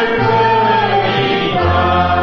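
A church choir singing a hymn in long held notes over low sustained bass notes, the bass moving to a lower note near the end.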